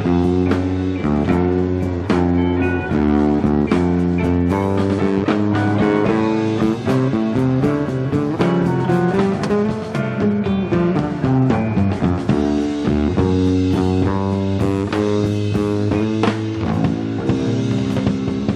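Electric bass guitar solo played live on a Fender bass: a bluesy run of plucked notes.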